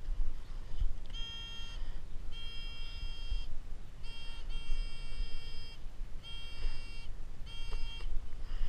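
Metal detector pinpointer sounding its alert tone in about six separate bursts, each half a second to a second long, as the probe is worked around inside the hole: the signal that a metal target is close by, here an old pull-tab can top.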